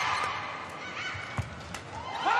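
A fast badminton doubles exchange: rackets strike the shuttlecock about five times, roughly three hits a second. Shoe squeaks on the court floor and a steady murmur of the arena crowd run underneath.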